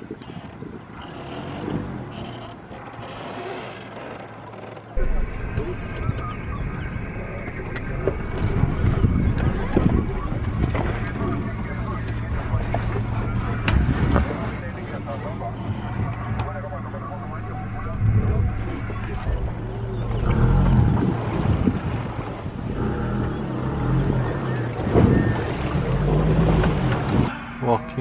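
Safari minivan engine running at low speed over rough, rutted ground toward a stream crossing, with repeated knocks and rattles from the jolting body. The engine hum gets louder about five seconds in.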